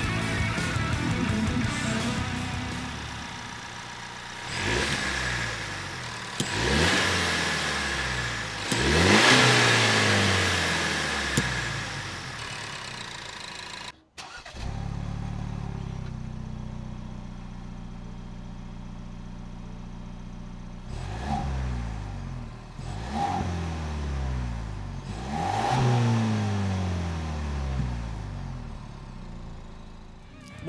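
The 2021 Ford Bronco's 2.3-litre EcoBoost four-cylinder accelerating, its revs climbing and dropping through several upshifts. In the second half it idles steadily and is revved briefly three times.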